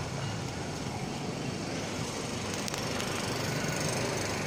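Steady outdoor street background noise: a low hum of distant traffic, with no distinct event standing out.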